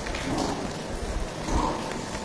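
A steady, even rushing noise with a few faint low thumps, of the kind rain makes.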